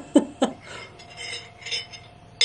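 A woman laughing in a few quick bursts, then faint clinking and sipping as she drinks from a glass jar through a straw.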